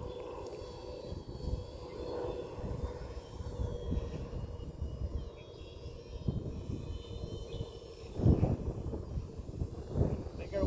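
Small radio-controlled model plane flying overhead, its motor and propeller giving a steady hum, over wind rumbling on the microphone with a louder gust about eight seconds in.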